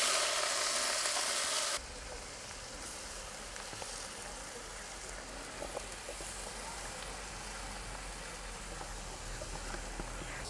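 Chopped callaloo and vegetables sizzling as they hit hot oil in a pot, a loud steady hiss that cuts off abruptly a couple of seconds in. After that only a faint background with a low hum and a few light ticks remains.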